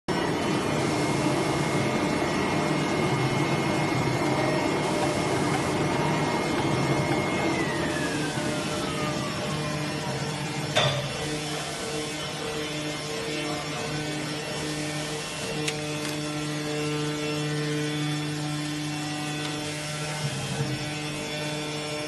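Flatbed digital cutting plotter running, with a steady motor hum. A high whine holds level, then falls in pitch over about three seconds and ends in a sharp click about eleven seconds in.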